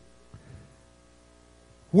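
A pause in a man's speech, filled by a faint, steady mains hum with a brief soft sound about half a second in. The voice starts again right at the end.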